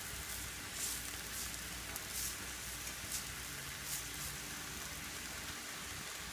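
Shredded butternut squash sizzling in hot oil in a cast iron skillet, a steady hiss with light crackles every second or so.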